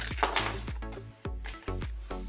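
A small brass padlock clatters briefly with a metallic clink as it comes out of its plastic blister pack onto the table, about a quarter second in, over background music with a steady beat.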